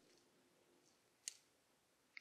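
Near silence with one faint, short click a little over a second in: a back-probe needle being worked into the rear of the electronic throttle actuator's wiring connector.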